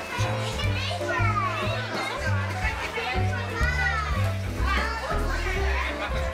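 Music with a bass line stepping between held notes about every half second, and high gliding voices singing over it.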